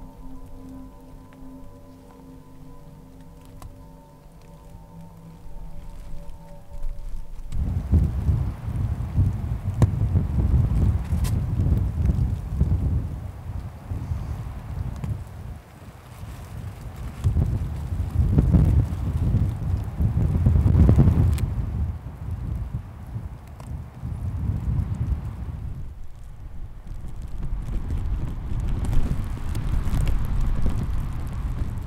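Held music notes for about the first seven seconds, then strong gusting wind buffeting the microphone with a low rumble that rises and falls, loudest about two-thirds of the way through. Rain is falling in the gale.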